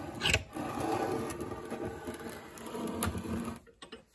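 Cast-iron Allied 6-inch Multi-Vise being worked by hand: its rusty screw and sliding jaw grind and rattle for about three and a half seconds. There is a sharp metal knock near the start and another about three seconds in.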